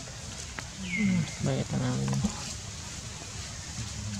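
Indistinct low voices murmuring for about a second and a half, with a short high squeak falling in pitch just before them.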